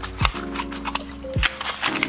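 Scissors snipping open a paper envelope: several sharp cutting clicks with paper crackle, over soft background music.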